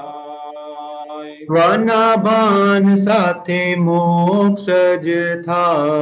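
A voice singing a line of a Gujarati devotional bhajan in long, drawn-out notes, softer at first and louder from about one and a half seconds in.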